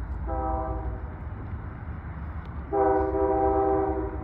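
Diesel locomotive air horn sounding a multi-note chord: a short blast near the start, then a longer, louder blast in the second half that is still going at the end. The low rumble of the approaching locomotives runs underneath.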